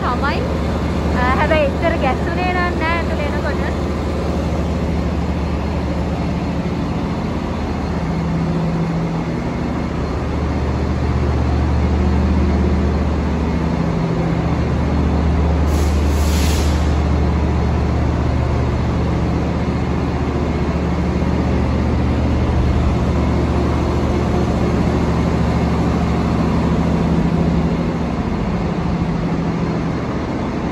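Tri-Rail diesel-electric locomotive idling at the platform, a steady low engine hum whose pitch shifts slightly now and then, with a short hiss about halfway through.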